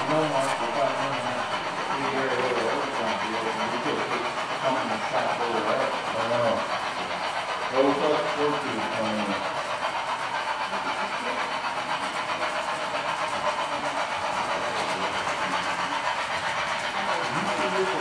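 American Flyer S-gauge model trains running around the layout: a steady whirring rumble of locomotive motors and wheels on the track.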